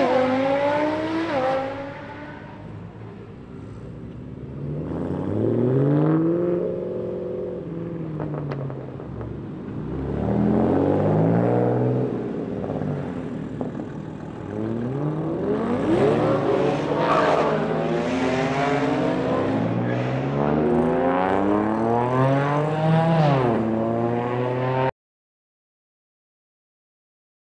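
Car engines revving and accelerating away in several separate pulls, each one climbing in pitch and then dropping back, with the pulls overlapping toward the end. The sound cuts off suddenly about a second before the end.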